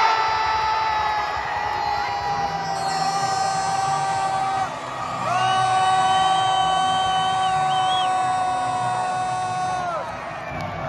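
A stadium crowd cheering and yelling at a goal. Two long, steady blasts of a pitched tone sound over the cheers: the first sinks slightly in pitch and breaks off near the middle, and the second starts half a second later and holds until near the end.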